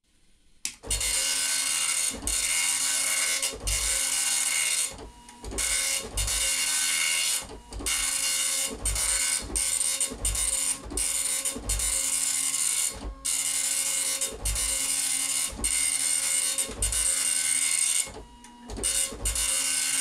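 Original Apple ImageWriter 9-pin dot matrix printer printing: the print head makes a buzzy rasp in passes about a second long, with a low thud between passes and a few longer pauses. It is printing properly again after its stuck pin was freed by cleaning the print head.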